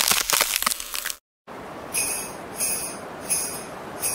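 Cartoon freezing sound effect: a dense crackle, like ice cracking, that fades over about a second. After a brief moment of dead silence comes a steady hiss with four short, bright bursts at even spacing.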